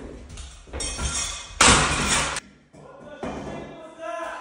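A run of loud crashing and clattering noises, something falling and crashing down. The loudest crash comes about one and a half seconds in, with a smaller one near the end.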